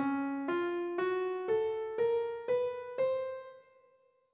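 Piano playing scale 3683, the Dycrian scale, ascending one note every half second: C, D-flat, F, G-flat, A, A-sharp, B and the C an octave above. The top C rings out and fades about half a second before the end.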